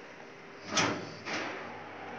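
Elevator door opening: two short sliding noises about half a second apart, the first louder, a little under a second in.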